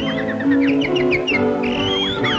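Orchestral cartoon score with high bird-like chirps: a quick run of short chirps in the first half, then a high whistle that glides upward near the end.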